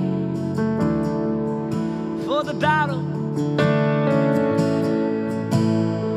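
Acoustic guitar strummed slowly through chord changes in a live worship song, over sustained chords. A short wavering vocal-like line comes in about halfway through.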